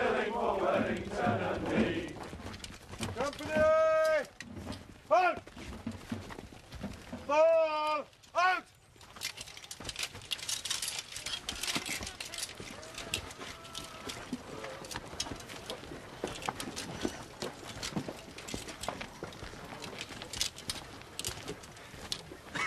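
The end of a marching song sung by a body of men, followed by loud, wavering cries of a farm animal, heard twice in quick pairs about four and seven seconds in. After that comes the steady clatter and shuffle of many marching feet and equipment on a dirt road.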